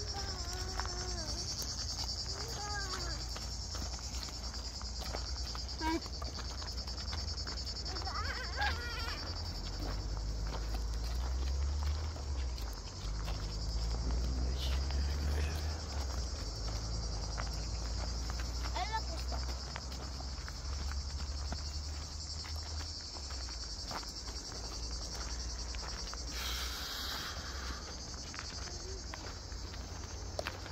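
A steady, shrill chorus of cicadas throughout, with a low rumble through the middle stretch and a few brief children's calls.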